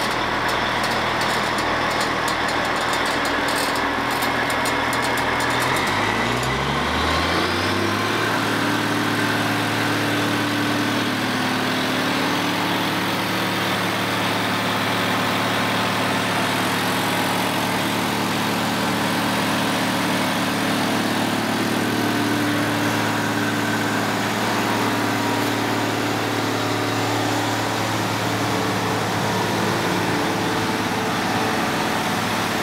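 Wirtgen W 2000 cold milling machine's diesel engine running, with a fast high ticking in the first few seconds; about six seconds in it revs up from idle and then holds steady at the higher speed.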